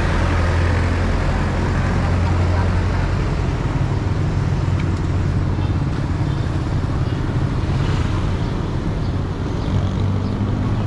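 Town street traffic with a vehicle engine running close by, its low hum easing off about halfway through, over the steady noise of passing motorcycles, tricycles and cars.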